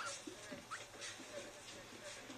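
Faint, short high squeaks of a guinea pig, a few thin rising chirps, played back quietly from a TV soundtrack.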